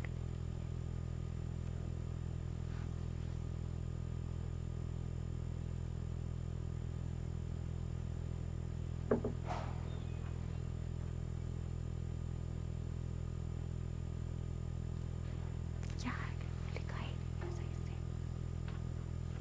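A steady low hum under faint, distant voices, heard briefly about halfway through and again near the end.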